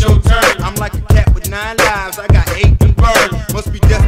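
Hip hop song: rapped vocals over a beat with heavy, deep kick drums.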